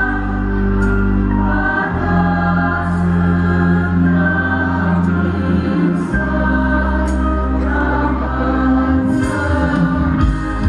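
A choir singing a slow ceremonial song with instrumental accompaniment, long held chords over sustained bass notes that change every couple of seconds.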